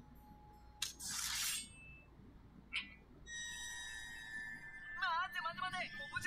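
Anime soundtrack: a sharp crack and a short burst of noise about a second in, a click near three seconds, then a sustained shimmering tone. Near the end a young man's voice shouts in Japanese.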